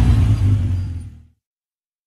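A loud, rough rumble with a deep low end that fades and then cuts off into complete silence just over a second in.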